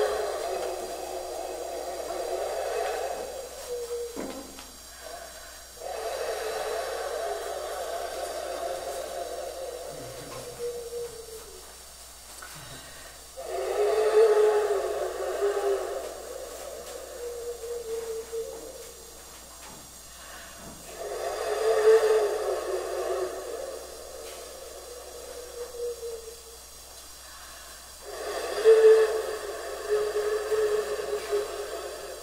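Breathy, hissing blown sound from a small object held cupped in the hands at the mouth. It comes in phrases a few seconds long with short pauses between them, some carrying a faint wavering pitch.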